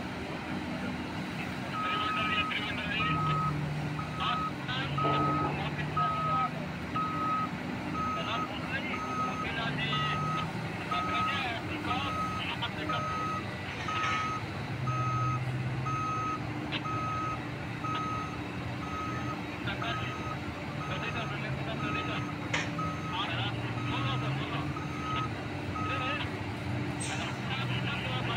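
A backup alarm on heavy mining machinery beeps at an even pace, starting about two seconds in and stopping near the end. Under it run the large diesel engines of a hydraulic mining excavator and a haul truck during loading.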